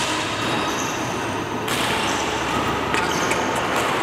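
Indoor badminton hall ambience: a steady noisy background with a few short high squeaks, like shoes on the court, and faint knocks from play.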